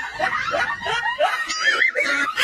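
People laughing in short, high-pitched bursts that waver up and down in pitch.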